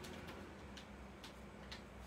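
Faint, light ticks and scrapes, about one every half second, as a silicone scraping tool dabs and drags pink paint across painted card house shapes.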